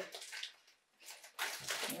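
Plastic LEGO minifigure blind bag crinkling as it is handled and torn open, in two short spells of rustling with a brief silent gap between them.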